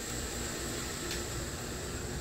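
Steady background room noise: an even hiss with a faint steady hum, like fans or air conditioning running.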